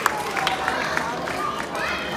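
Audience clapping that trails off within the first second, over the steady murmur of a crowd in a hall.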